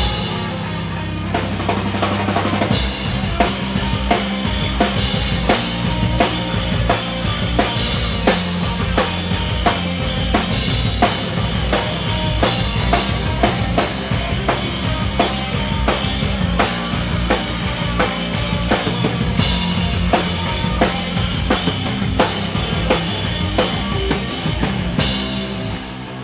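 Live stoner rock band playing a drum-driven passage: a drum kit beating steadily with kick, snare and cymbals over electric guitars and bass guitar. The heavy low end comes in a few seconds in.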